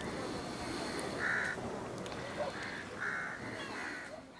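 Crows cawing: about four short, harsh calls from about a second in, over a steady outdoor ambience hiss.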